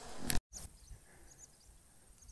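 A short rustling noise that cuts off abruptly, then faint outdoor quiet with small high chirps every half second or so.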